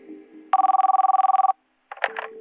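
Telephone ringing on the line: one electronic trilling ring of about a second, two pitches warbling together, that cuts off sharply.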